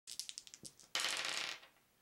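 A handful of plastic polyhedral dice thrown onto a table. Separate clicks come first, then a dense clatter about a second in that lasts half a second and dies away.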